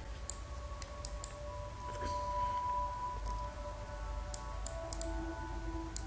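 Scattered sharp computer mouse clicks over faint background music of long held notes and a low hum.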